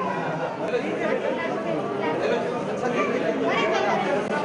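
Several people talking at once, overlapping voices in a dense chatter with no single clear speaker.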